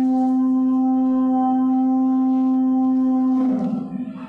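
Adhan, the Islamic call to prayer, sung by a muezzin: one long note held at a steady pitch that ends about three and a half seconds in, echoing briefly as it stops.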